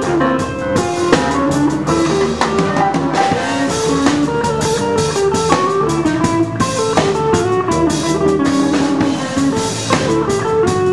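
Solid-body electric guitar playing a jazz solo line of single notes over a drum kit in a big band arrangement.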